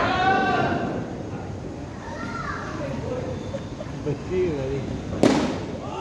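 Players' voices calling out across a netted cricket ground, then a single sharp crack about five seconds in, the loudest sound, like a cricket bat striking the ball.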